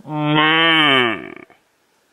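Red deer stag roaring: one loud, long call of about a second and a half that drops in pitch as it ends.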